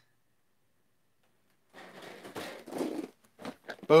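Silence for well over a second, then about a second and a half of rustling and crunching as a collection of packaged toy cars is searched through by hand, with a few sharp clicks near the end.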